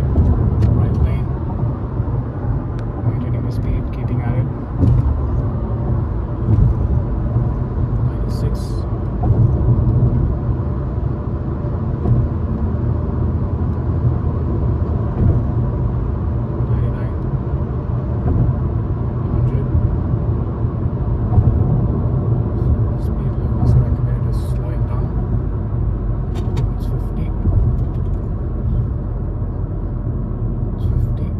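Car interior road noise at highway speed of about 100 km/h: a steady low rumble, with a few faint light clicks and rattles scattered through.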